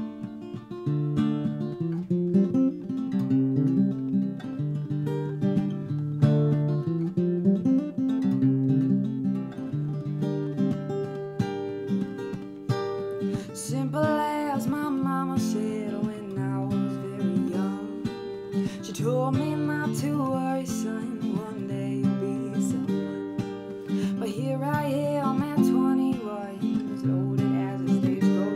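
A capoed acoustic guitar strummed in a steady chord pattern. A woman's singing voice comes in about halfway through and carries on over the guitar.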